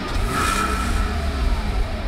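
A car engine sound that swells about half a second in, then begins to fade away near the end.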